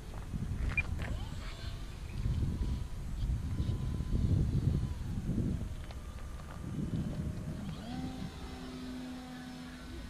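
Wind buffeting the microphone with an uneven low rumble, over the faint whine of an E-flite Apprentice RC trainer's electric motor flying overhead. The whine holds a steady pitch, dips around six or seven seconds in, then settles on a new steady note near the end as the throttle changes.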